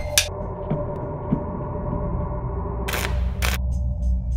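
A single drum hit right at the start, then a low, steady ringing drone. About three seconds in come two short, sharp bursts of noise, half a second apart.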